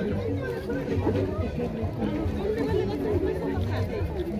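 Indistinct chatter of several people talking, with music playing in the background.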